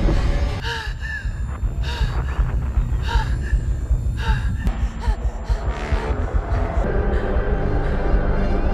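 Space-disaster film trailer soundtrack: a deep rumble under dramatic music, with short chirping sounds through the first half and steadier music tones after about five seconds. A woman's gasping, panicked breathing inside a space helmet comes in with the music.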